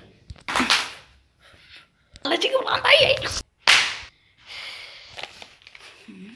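Loud rustling and knocking of the recording phone being grabbed and swung about, with a voice crying out during the longest burst in the middle.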